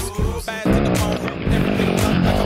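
Pop/hip-hop backing music with a dirt bike engine mixed in. About half a second in the engine revs up quickly, then rises and falls in pitch as the bike rides by.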